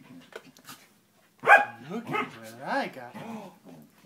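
A dog barking and yowling: a sharp bark about a second and a half in, then a run of calls that rise and fall in pitch for about two seconds.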